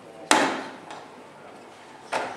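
A single loud knock with a short ringing fade, about a third of a second in, then a faint knock: a potted pool ball dropping into the pool table's ball return.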